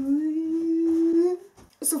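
A young woman humming one held note for about a second and a half, its pitch creeping slightly upward.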